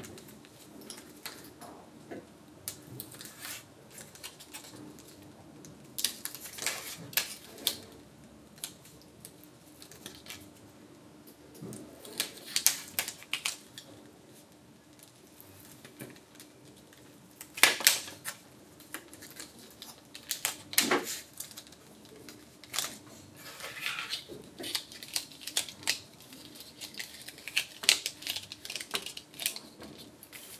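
Peeling the liner off red high-tack tape on a card frame's tabs and handling the card: scattered crackling, scratching and sharp clicks. The loudest burst comes a little past halfway.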